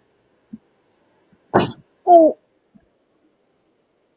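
A short clatter of dropped objects, followed about half a second later by a brief voiced exclamation.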